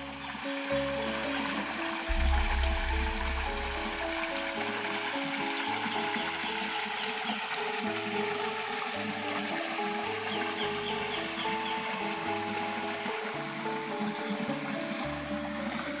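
Background instrumental music: a melody of held notes over a pulsing bass line, with a steady hiss underneath.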